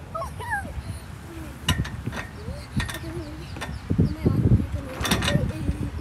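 Low rumble of wind buffeting the microphone, with several short, high-pitched vocal calls that rise and fall and a few sharp knocks scattered through.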